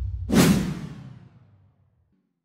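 Whoosh sound effect of a TV show's logo sting: a rush that swells to a peak with a low boom about half a second in, then fades away over about a second, over the dying bass of the drum hits just before it.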